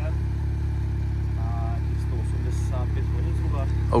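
Can-Am Maverick X3's Rotax 900 three-cylinder engine idling steadily.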